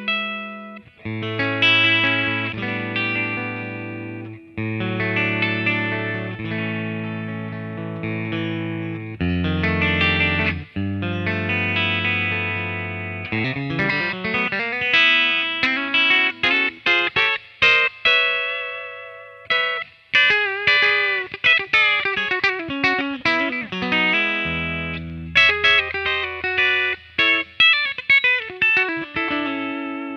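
Fender Custom Shop '61 Telecaster Relic electric guitar, ash body with rosewood fingerboard, played through an amp on its bridge pickup. It opens with strummed chords over ringing low notes, moves to single-note lines with bent notes about halfway, and returns to chords near the end, the last ones left ringing.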